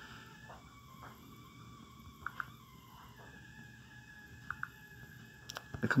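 Quiet background hiss with a faint steady tone, broken by a few short soft clicks about two seconds in and again about four and a half seconds in.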